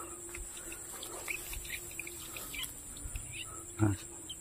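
Birds chirping in short, scattered calls over a faint steady background hum. A brief voice sound comes just before the end.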